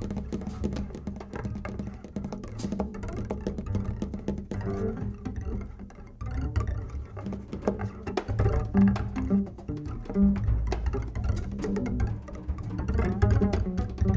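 Music led by a low double bass, its notes plucked and bowed, with scattered light clicks and taps throughout; it grows louder about eight seconds in.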